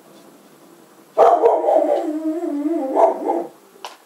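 A dog vocalizing: one long call of about two seconds that wavers up and down in pitch, starting about a second in. A short click follows near the end.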